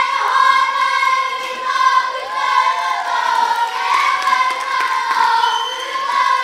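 Children's kapa haka group singing a Māori waiata together in unison, many young voices at once, loud and continuous.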